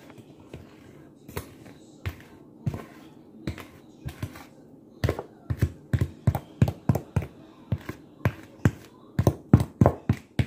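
A spoon knocking against a mixing bowl while brownie batter is stirred. The knocks are sparse at first, then come quicker, about two or three a second, from about halfway, and are loudest near the end.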